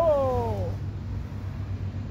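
A man's drawn-out vocal exclamation ("oh!"), falling in pitch and ending under a second in, followed by a low steady background hum.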